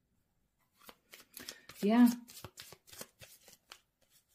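A deck of oracle cards being shuffled by hand: a quick run of soft card clicks and flicks that starts about a second in and stops just before the end.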